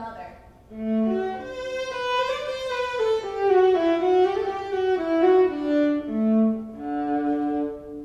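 Solo violin playing a slow phrase of sustained bowed notes, dropping to a low note about a second in and again about six seconds in.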